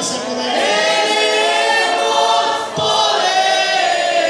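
A group of voices singing together in long held notes, with a short break and a fresh phrase about three seconds in.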